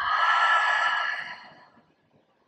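A person's long, audible sighing exhale. It starts suddenly, lasts about a second and a half and fades away.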